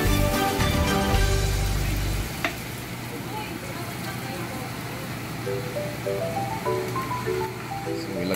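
Minced garlic frying in melted butter in a nonstick pan, sizzling steadily. Background music plays over it, loud with a bass line for the first two seconds or so, then softer.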